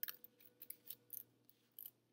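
Quiet room tone with a scattering of faint, quick clicks, about eight over two seconds, and a faint steady hum.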